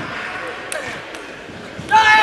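Table tennis rally: the celluloid ball clicks sharply off bats and table about four times, some half a second apart, over the murmur of voices in a large hall.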